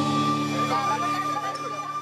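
Live stage band's sustained chord ringing on and slowly fading after the drums stop, with a wavering voice gliding over it.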